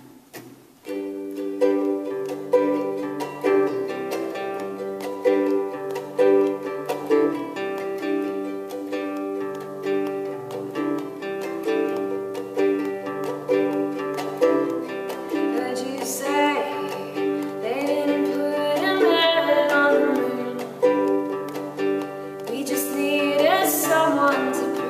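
Ukulele and acoustic guitar playing together in a steady strummed and picked rhythm, starting about a second in. A woman's singing voice joins in around two-thirds of the way through.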